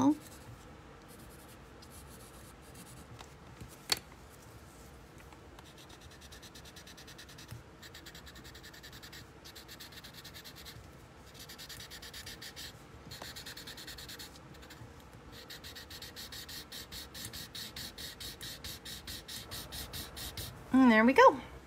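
Graphite pencil shading on a paper Zentangle tile: quick back-and-forth scratchy strokes, several a second, that grow steadier and more even in the second half. One sharp click comes about four seconds in.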